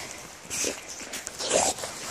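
American Staffordshire terrier making two short vocal sounds while playing, about half a second and a second and a half in, the second louder.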